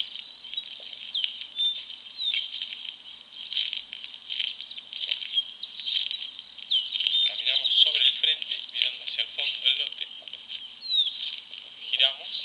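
Small birds chirping and calling in dry scrub: a busy, high-pitched chorus of short chirps and quick pitch glides.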